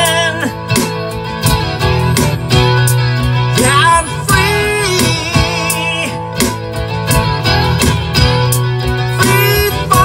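Music: a Maton acoustic guitar strummed in a steady rhythm over a low sustained bass part, with held, wavering melody notes above.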